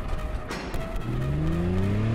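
Car engines accelerating, their pitch rising steadily from about a second in over a dense low rumble.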